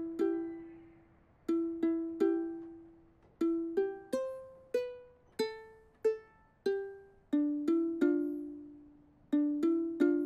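Ukulele played slowly, one plucked note at a time, each note ringing and fading. The melody climbs to its highest notes about four seconds in, then steps back down, with short pauses between phrases.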